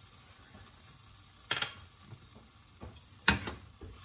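Butter and garlic salt sizzling faintly in a skillet over a gas burner, with a spoon clacking against the pan twice, the louder knock near the end as stirring begins.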